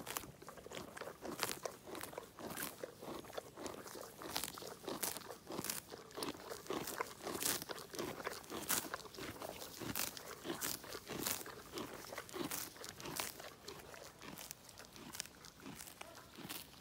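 A pony grazing close up, tearing off mouthfuls of grass and chewing: an uneven run of crisp rips and crunches, two or three a second.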